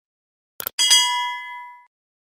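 Subscribe-button animation sound effect: a quick double mouse click, then a single bright bell ding that rings out for about a second.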